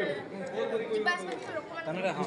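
Chatter of several people talking at once.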